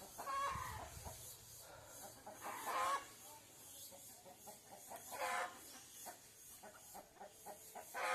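Chickens clucking in three short bursts of calls spread over several seconds.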